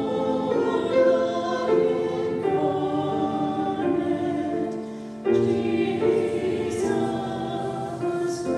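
Two women singing a duet with grand piano accompaniment; one phrase ends and the next begins about five seconds in.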